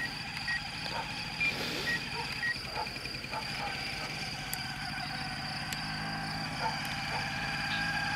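Short electronic beeps from an RC radio transmitter's buttons, about half a second apart, in the first few seconds while its settings are adjusted. They sit over a steady high-pitched whine of several tones that grows a little louder.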